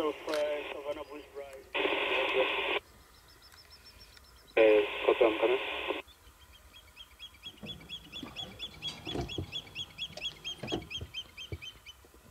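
Two-way radio transmissions with a narrow, tinny voice, a one-second burst of static, then more voice, cutting off about six seconds in. After that, a faint rapid run of high chirps, about four a second, with a few soft knocks.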